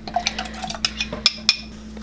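A spoon scraping and tapping against a small glass bowl while chopped garlic and spices are tipped into a plastic blender cup: a run of light, irregular clinks and knocks.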